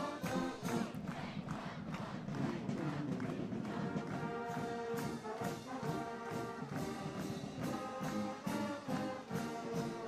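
Brass band playing a tune, with trombones and trumpets over a steady beat of about three strokes a second.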